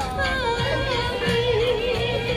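A woman singing into a microphone through a portable amplifier speaker, over accompaniment music. About half a second in she settles on one long note and holds it with vibrato.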